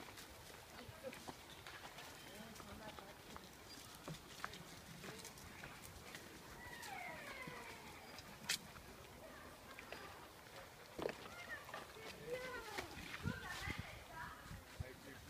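Quiet woodland path: faint distant voices, scattered light clicks of footsteps on the dirt path, and one sharp snap about eight and a half seconds in.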